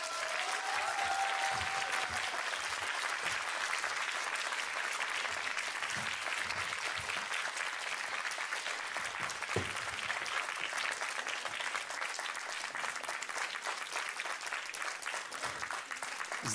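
Audience applauding steadily in a long round of welcoming applause for a performer coming on stage, easing slightly toward the end.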